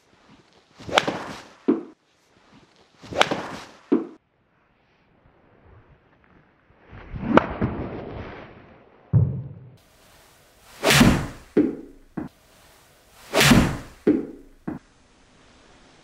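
A golf club swishing through and cracking a ball off a hitting mat, about five shots in all. Most strikes are followed less than a second later by a duller thud, with a couple of extra light knocks near the end.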